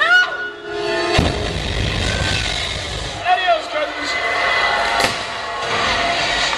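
Stunt-show pyrotechnics over a water set: a sudden blast about a second in, followed by a heavy rumble, and a second sharp bang near the end, with shouted, amplified voices between.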